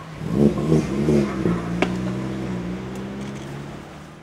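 A motor vehicle's engine revs briefly, rising and falling in pitch, then holds a steady note that slowly fades. A single sharp click sounds about halfway through.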